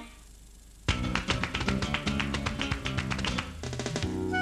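A TV channel ident jingle: after a brief lull, fast percussive music starts about a second in, a rapid run of pitched strikes.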